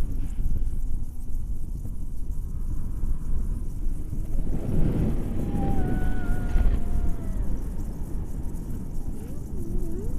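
Wind buffeting the camera microphone in flight under a tandem paraglider, a steady low rumble. About halfway through it swells, and a drawn-out voice-like call sounds over it for a second or two.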